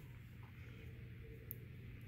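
Quiet room tone: a faint steady low hum, with one brief faint tick about one and a half seconds in.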